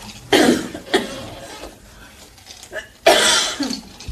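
A person coughing: two coughs within the first second, then a louder one about three seconds in.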